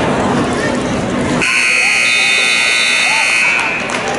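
Electronic scoreboard buzzer sounding one steady tone for about two and a half seconds, starting abruptly about a second and a half in, signalling that time has run out in the wrestling bout.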